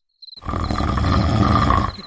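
A rough, growling, pig-like grunt that starts about half a second in and lasts about a second and a half, over a steady chirping of crickets.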